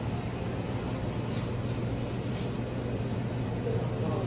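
Steady room tone inside a shop: a constant low hum under an even hiss, with no distinct events.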